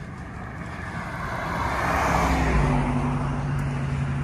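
Traffic passing on the bridge roadway close by. Tyre and engine noise swells to a peak about halfway through, then gives way to a steady low engine hum.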